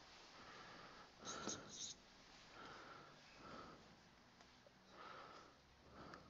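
Near silence. About a second in, a felt-tip marker squeaks briefly on a whiteboard, and faint breaths follow into a close headset microphone.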